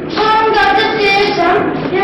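Children's voices singing a song, holding each note for a moment as the melody steps up and down. The recording is dull and muffled, dubbed from an old VHS tape.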